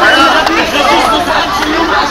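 Several young men's voices talking over one another in close, lively chatter.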